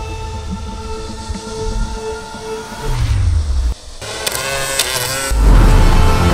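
Hovering camera drone's propellers humming steadily overhead for about three seconds. Then a short low falling sound, and loud music comes in near the end.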